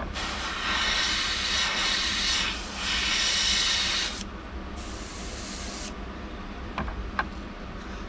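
Iwata gravity-feed airbrush spraying pearlized silver paint, a steady hiss of air and paint with a brief break about two and a half seconds in. The spraying stops about four seconds in, and a fainter, thinner hiss and a couple of light clicks follow.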